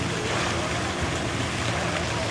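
Elephants splashing and churning the water as they swim, heard as a steady rushing of water.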